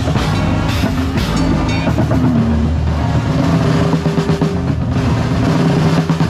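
Drum corps show music heard from inside the front ensemble: drums and percussion strikes over sustained low chords, played continuously and loud.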